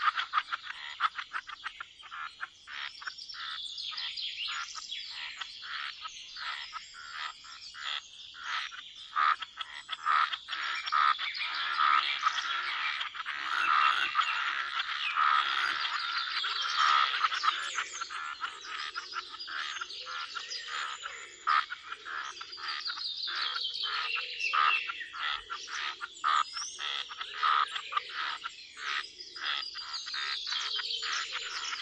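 A chorus of frogs croaking in fast, dense runs of pulses at a pond. Birds chirp over it, more often near the end.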